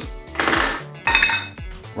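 Metal lid of a Durham's Rock Hard Water Putty can being pried off with a small metal tool: two short metallic scrapes and clinks, the second with a brief ring.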